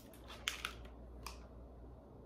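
Clear plastic packaging of a Scentsy wax bar crackling and clicking as it is handled and opened, with a few short sharp crackles about half a second and just over a second in.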